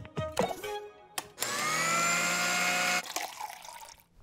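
Cartoon sound effect of an electric blender: a few light plops as ingredients drop into the jar, a click about a second in, then the motor whirring with a rising pitch for about a second and a half before it stops.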